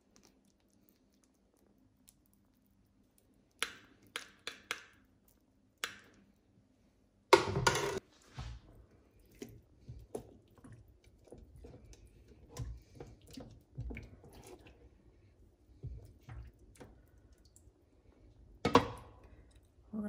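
Kitchen tongs knocking and scraping in a slow-cooker crock while lifting braised beef short ribs out of their sauce. There are a few light clicks early, a sharp clatter about seven and a half seconds in, then many soft irregular knocks and another sharp click near the end.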